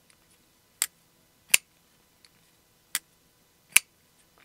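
Kirby Lambert Raine titanium frame-lock flipper knife being flicked open and shut, its blade action giving four sharp clicks in two pairs.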